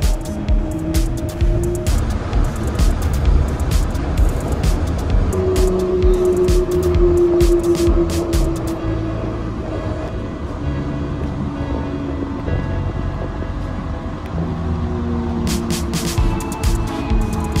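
Background music over the steady running rumble of a Yurikamome rubber-tyred automated guideway train.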